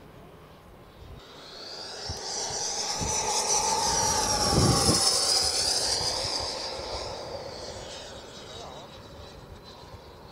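Schubeler 120 mm electric ducted fan of a Sebart Avanti XS RC jet on a 14S pack making a fast fly-by: a high whine swells over about three seconds to a loud peak near the middle, drops in pitch as the jet goes past, then fades away.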